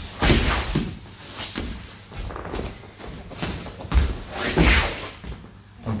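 Dull thuds of a knee and feet landing on a foam training mat as a fighter drops low into an ankle-pick takedown, with rustling of clothing; one burst just after the start, another cluster about four to five seconds in.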